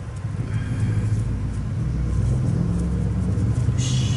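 A passing motor vehicle: a low rumble that swells and then holds, with a brief higher hiss near the end.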